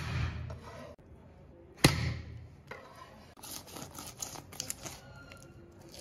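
Flat of a cleaver smacking a live carp's head against a wooden chopping board to stun it: a sharp smack right at the start and a second one just under two seconds in, followed by lighter knocks and clicks.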